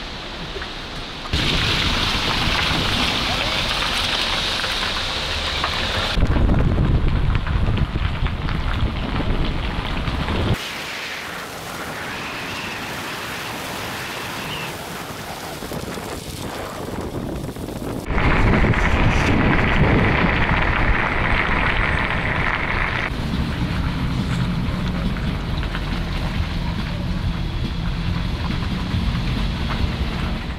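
Wind rushing over the microphone, with tyre and engine noise, from a car driving slowly along a narrow dirt mountain road. The noise changes tone abruptly several times.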